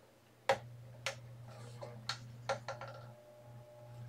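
Apache AL13 laminator running with a steady low hum as a foil-and-parchment sheet feeds through its heated rollers, with several sharp clicks, the loudest about half a second in.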